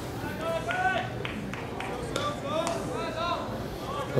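Spectators' voices murmuring and calling out over each other in a ballpark crowd, none of it clear speech, with a few short sharp clicks.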